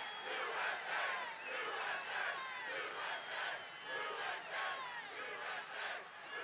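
Large rally crowd shouting and chanting together, many voices swelling in a steady rhythm.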